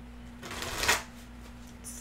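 A deck of tarot cards being shuffled: one brief riffle of about half a second, growing louder and cutting off sharply about a second in.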